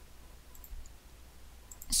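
A few faint computer mouse clicks scattered through a pause, over a low steady hum. A man starts speaking near the end.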